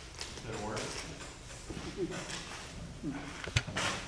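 Indistinct voices talking off-microphone, with a single sharp knock about three and a half seconds in.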